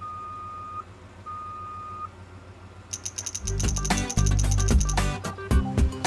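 Cartoon sound effects of a truck's reversing beeper, two steady beeps about half a second apart, over a low engine hum. From about three seconds in comes a fast ratcheting clatter of gears and machinery with a loud low rumble.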